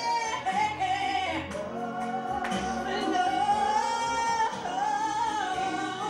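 A woman singing a gospel praise song into a microphone, holding long notes that slide up to a higher pitch about four seconds in, over recorded instrumental accompaniment.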